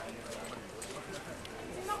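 Faint voices of people talking in the background, with scattered light clicks.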